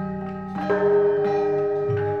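Javanese court gamelan playing: bronze metallophones and gongs struck with mallets, several notes ringing on and overlapping. A new, louder stroke comes a little after half a second in.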